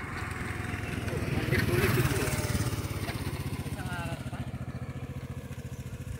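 A small engine running with a rapid, even putter, loudest about two seconds in and then slowly fading.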